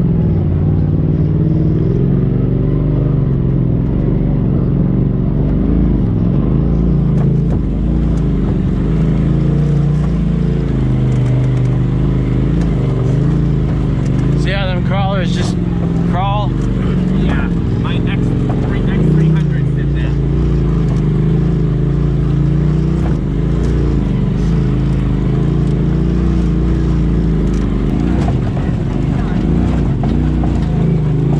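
Side-by-side UTV engine running steadily at low revs while crawling over rocks, its pitch rising and falling a little with the throttle. A short voice-like call cuts in about halfway through.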